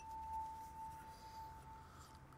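Background music: one sustained high note held steady, swelling briefly in the first half-second.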